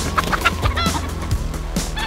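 Hen squawking in a few short, sharp calls while being chased.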